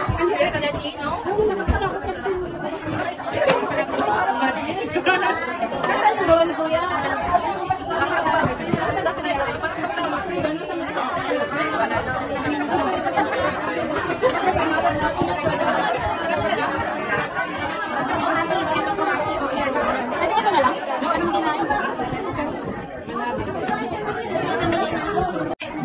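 Many people talking at once, a steady babble of overlapping voices with no one voice standing out.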